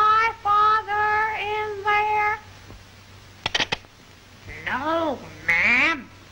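High-pitched cartoon voice singing or calling a string of short held notes over the first two seconds. After a pause and a couple of quick clicks, two swooping squeals rise and fall in pitch near the end.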